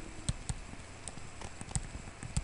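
Faint, irregular taps and clicks of a stylus on a tablet screen during handwriting, about six in two seconds, over a low steady hum.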